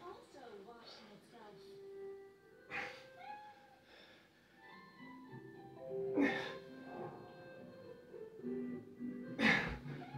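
A children's cartoon playing in the background, with music and voices. A short sharp breath comes about every three seconds, three times, each with a push-up.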